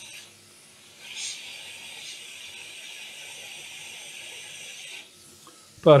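A steady hiss while a replacement capacitor is soldered onto a laptop motherboard. It stops about five seconds in, as the soldering ends.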